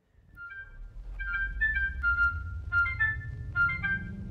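A jingle melody of short, high notes begins about a second in, over a low hum that rises steadily in pitch.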